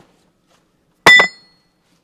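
A single sharp clink about a second in, with a brief high ringing that dies away quickly.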